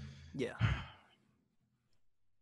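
A man sighing out a breathy 'yeah' into a close microphone while thinking over a question, over in about a second.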